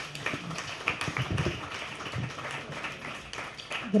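Audience applauding: a steady patter of many hands clapping.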